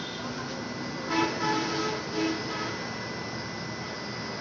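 Steady hiss and high whine of a CNG dispenser filling a vehicle's tank with compressed natural gas. A couple of short vehicle-horn toots sound over it about a second in and just after two seconds.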